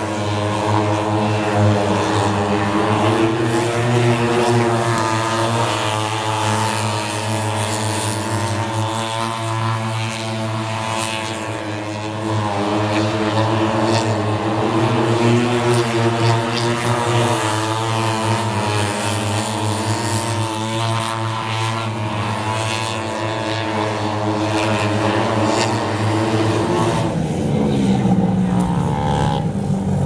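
Engines of several mini speedway motorcycles racing around a dirt oval, their note rising and falling as the riders go through the bends and straights. Near the end one engine's pitch drops away as it slows.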